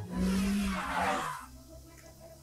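A loud whooshing rush from the series' sci-fi soundtrack that starts suddenly, sweeps down in pitch and fades within about a second and a half, over a low hum.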